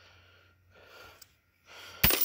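Near silence: a person's faint breathing, rising twice, over a low steady electrical hum.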